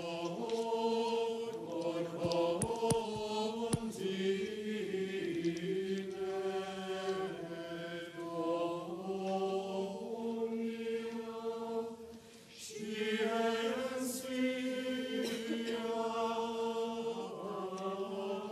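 Church choir singing the introit chant of the Mass in a large cathedral. The voices hold long sung phrases, with a short pause for breath about two-thirds of the way through.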